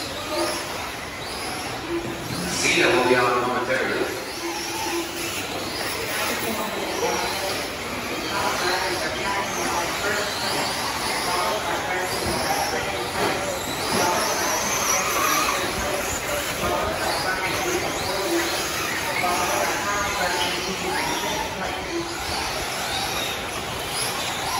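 Electric 1/8-scale RC truggies racing on a dirt track: several electric motors whining, rising and falling in pitch as they accelerate and brake. Voices can be heard underneath.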